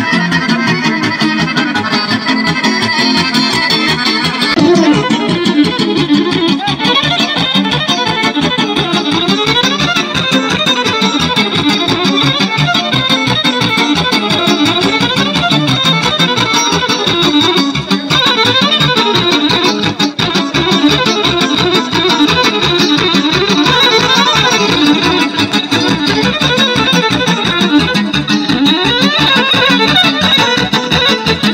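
Loud Roma folk dance music led by accordion and violin over a steady, even beat, with quick running melody lines.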